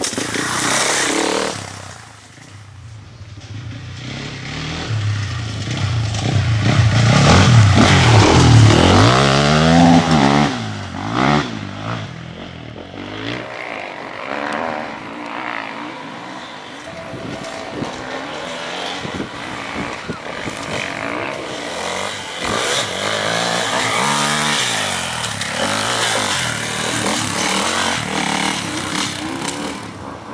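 Enduro dirt bike engines revving up and down in quick bursts as bikes are ridden over the course. The loudest stretch is about eight to ten seconds in, when a bike passes close, and the revving carries on quieter after that.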